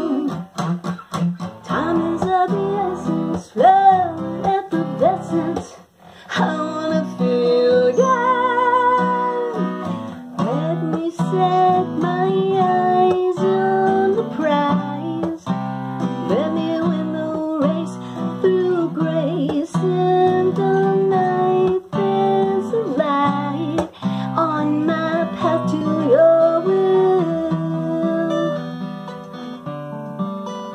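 A woman singing to her own acoustic guitar accompaniment, holding a wavering note with vibrato about eight seconds in.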